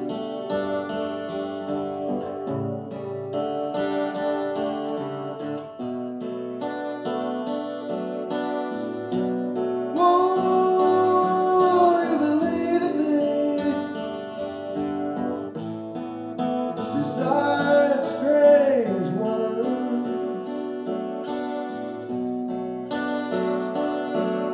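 Live acoustic guitar playing a picked passage, with a melodic line that slides and wavers in pitch around ten seconds in and again around seventeen seconds in.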